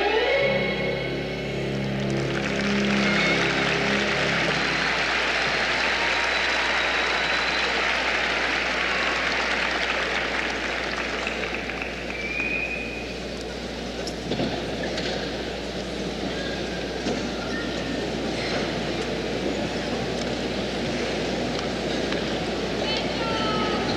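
Skating program music ends in the first couple of seconds, then the arena audience applauds with a few whistles. The applause is loud for about ten seconds, then dies down to a lower crowd noise.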